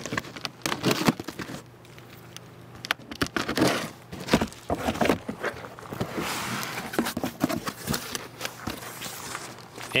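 A cardboard shipping box being opened by hand: a cutter slicing the packing tape, then the cardboard flaps bent back and the packing inside rustling, with scattered scrapes and clicks.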